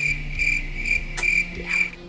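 Crickets chirping as an edited-in sound effect: one high chirp repeating about four times a second, cutting off abruptly near the end. It is the comic 'crickets' cue for a joke met with awkward silence.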